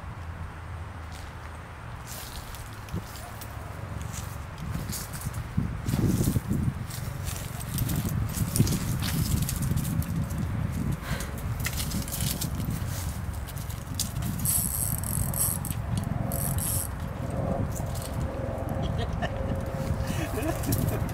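Wind buffeting the microphone in a low, uneven rumble, with scattered rustles and clicks from a dachshund scampering after a plush toy dragged on a fishing line over grass and gravel. From about a second and a half in there is a stretch of fast ticking, like a fishing reel being wound.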